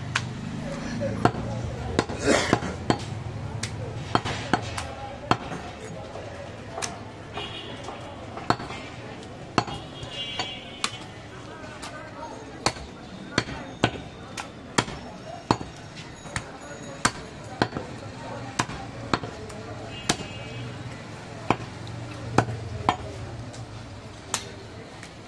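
Butcher's large curved knife cutting goat meat against a wooden log chopping block: sharp knocks at irregular intervals, roughly one a second, with voices in the background.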